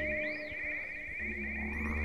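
Live improvised jam-band music: a fast-pulsing high tone runs over a deep low drone. The drone drops out soon after the start and comes back about a second in.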